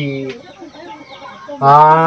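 A man's voice talking, breaking off about half a second in and starting again near the end with a long, drawn-out syllable; faint animal calls in the pause between.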